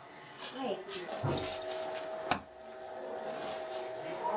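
Voices talking in the background, with a single sharp knock a little past the middle and a faint steady hum under it.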